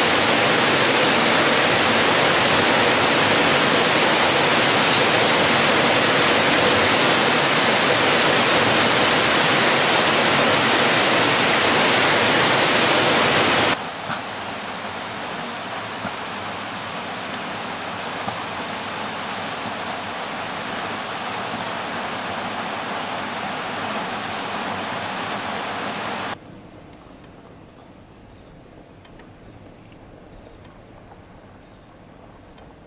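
Steady, loud hiss of heavy rain, which cuts suddenly about 14 s in to a quieter, steady rush of rain and falling water from a waterfall. That cuts off again about 26 s in, leaving only a faint background.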